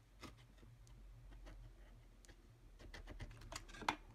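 Faint scattered clicks and scratches of a craft knife cutting a slit through folded brown cardstock as the card is handled, with a quick run of sharper clicks near the end.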